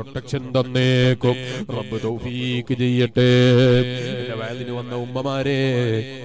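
A man's voice chanting in a slow, melodic recitation style, with long held notes that rise and fall; the loudest held note comes about three seconds in.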